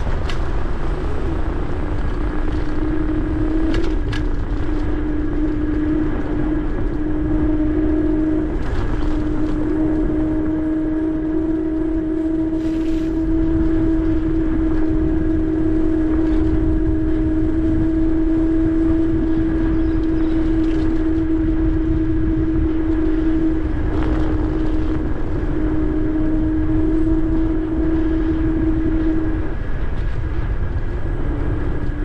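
Ninebot Max G30P electric scooter riding at a steady speed: a steady whine from its hub motor over a low rumble of tyres on pavement and wind. The whine cuts out briefly a few times and drops a little in pitch near the end.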